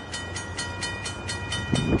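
Railroad grade-crossing warning bell starting to ring as the crossing activates for an approaching train: rapid repeated strikes, about seven a second, each with a ringing metallic tone. Low rumbling bursts come up near the end.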